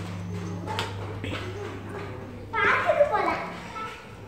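A young child's voice calling out briefly, high-pitched, about two-thirds of the way in, over a low steady hum.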